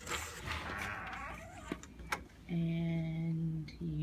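A front door being opened: a rush of noise for about two seconds, then a sharp click. A voice then holds a steady note for about a second.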